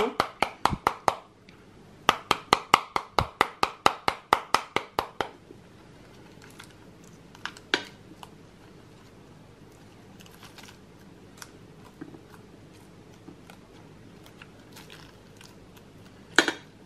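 A metal spoon beating the rind of a halved pomegranate held cut side down, striking steadily at about five knocks a second in two runs that end about five seconds in. The beating loosens the seeds so they drop onto the plate. After that there are only a few faint ticks as the rind is broken open and the last seeds are picked out by hand.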